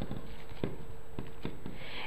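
Soft handling of a lump of cold porcelain dough and its plastic film wrap: a few faint ticks and light rustling of the plastic.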